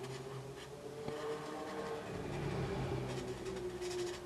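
Faint scratching of a Promarker alcohol-marker nib on paper as a picture is coloured in, over a steady low hum.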